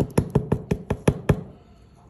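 About nine quick taps on a plastic container, roughly six a second, stopping about a second and a half in: tapping to shake springtails out into the tub.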